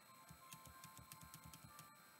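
Near silence: room tone, with a faint rapid ticking through the middle of the pause.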